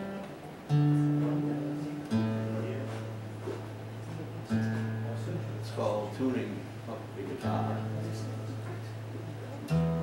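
Acoustic guitar chords struck one at a time and left to ring, about five in all, each fading away before the next.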